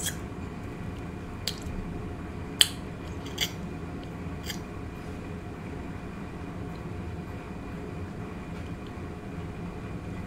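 Crispy fried fish being picked apart and eaten close to the microphone: a few short, sharp crackles of the fried batter in the first half, over a steady low room hum.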